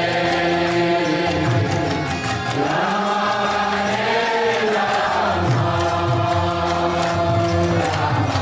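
Kirtan: voices chanting a mantra over held harmonium chords and violin, with a steady beat of small hand cymbals (kartals).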